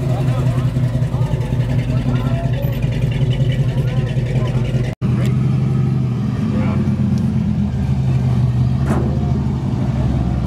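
A car engine idling with a low, steady rumble, with voices in the background. The sound cuts out for an instant about halfway through, and afterwards the engine note sits lower.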